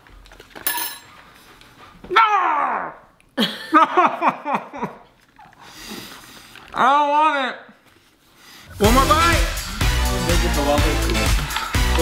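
A few short wordless vocal sounds: a falling groan about two seconds in and a rising-and-falling one about seven seconds in, with bits of laughter. From about nine seconds in, upbeat background music with a steady beat.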